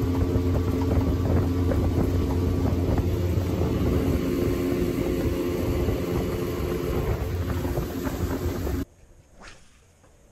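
Boat outboard motor running steadily with the boat under way, over rushing wind and water noise. It cuts off suddenly near the end, leaving only faint sounds.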